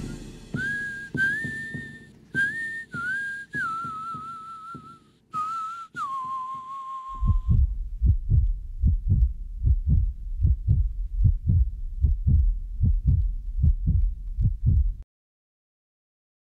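A lone whistled melody of a few held notes that slide from one pitch to the next, followed by about eight seconds of low thumps at a steady heartbeat-like pace of roughly three a second, which stop abruptly just before the end.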